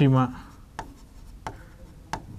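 Pen writing on a board: a few sharp taps of the tip against the surface, about one every 0.7 s, with faint rubbing between them.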